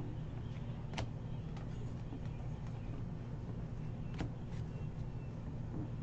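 2018 Topps Series 1 baseball cards being flipped through by hand, with a few faint card flicks, the clearest about a second in and about four seconds in. A steady low hum runs underneath.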